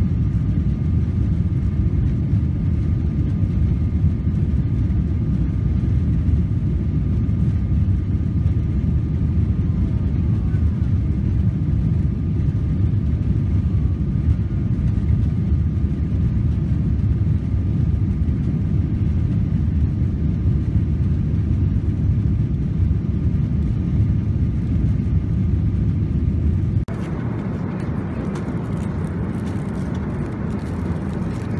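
Jet airliner cabin noise in flight: a deep, steady rumble of the engines and rushing air, with a faint steady whine above it. About 27 seconds in it cuts suddenly to a quieter, hissier cabin sound.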